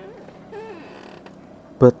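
A pause in a man's talk, filled by a faint, wavering, drawn-out hesitation sound from his voice, with speech resuming near the end.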